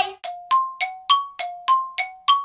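A run of bell-like dings, about three a second, alternating between a lower and a higher note, each ringing briefly: a chime sound effect added in editing.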